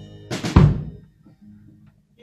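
A live band's final accent at the end of a song: the drum kit and strummed chords strike twice in quick succession, the second hit with a heavy bass-drum thump, cutting off the fading chords. The hits die away within about half a second, leaving a faint low note ringing.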